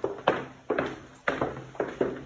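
Footsteps of hard-soled shoes walking on a wooden floor, a steady knock about twice a second, each step ringing briefly in the hallway.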